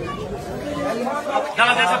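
Men's voices talking and chattering, fainter at first, with a louder close voice coming in about one and a half seconds in.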